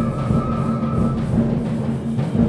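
A high school concert band playing a holiday piece: sustained low notes with regular percussion strokes underneath. A high held note stops a little over a second in.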